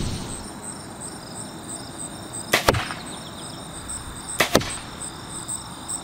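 Two arrows shot from a bow striking a target, each a single sharp knock, about two seconds apart. Steady pulsing insect chirping runs underneath.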